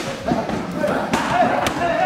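Punches landing with sharp thuds, three of them, over voices in the background.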